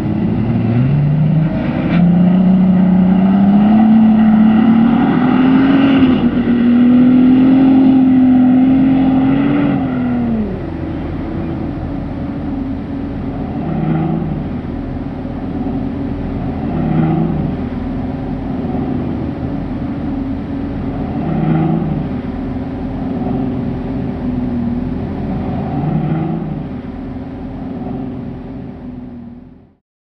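Bentley Bentayga SUV engine pulling hard up a sand dune. The revs climb over the first few seconds, hold high, then drop off about ten seconds in. After that it runs at lower revs, with short rises every few seconds.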